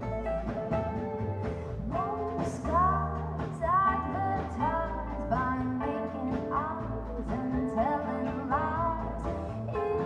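Live band playing a steady mid-tempo song: upright double bass, drums and acoustic guitar under a lead melody whose notes slide up into pitch.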